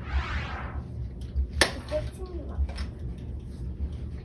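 A short breathy rush of sound at the start, then a single sharp click about a second and a half in, with a few faint voice sounds after it and a low rumble underneath.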